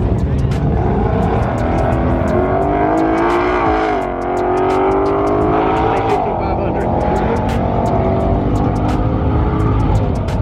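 A high-powered car engine at full throttle, accelerating down the runway. Its pitch climbs and falls back as it shifts gears, about four seconds in and again about six seconds in, with sharp short cracks over the run.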